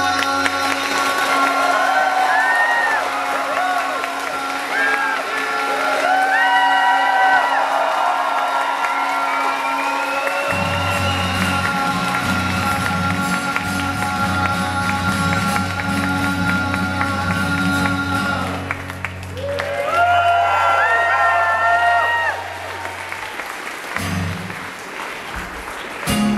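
Live acoustic guitar and male voices singing the big finish of a comedy song, with long held notes, over audience applause and cheering; the music drops back near the end.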